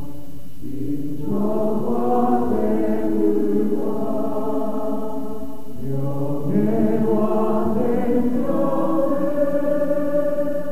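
Youth choir singing a hymn in held, full chords. There are short breaks between phrases about half a second in and again around six seconds.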